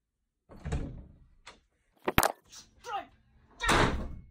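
Interior door being slammed: a run of thuds and knocks, the loudest a sharp bang about two seconds in, with another loud burst near the end.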